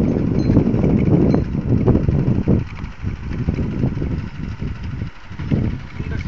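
Loud, low rumble of wind buffeting the microphone, gusting unevenly and dipping briefly near the end.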